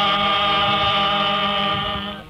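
Men's voices singing a Swahili marching song, holding one long, steady note that stops at the end.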